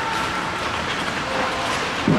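Steady rink noise of bandy players' skates scraping and gliding on the ice, with faint light clicks mixed in, echoing in a large indoor arena.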